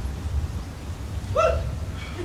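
A single brief high vocal sound, like a short squeal or yelp, about a second and a half in, over a low rumble.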